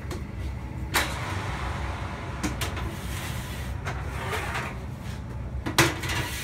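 Metal sheet pan handled at a convection oven: a sharp knock about a second in and another near the end as the oven door opens and the tray goes onto the rack, over a steady low hum.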